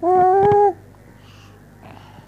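Newborn baby giving a single short cry, about two-thirds of a second long, its pitch rising slightly.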